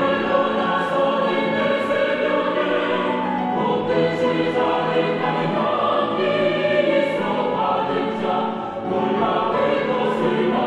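Mixed choir of women's and men's voices singing a Korean art song in parts, the lyrics sung steadily and legato.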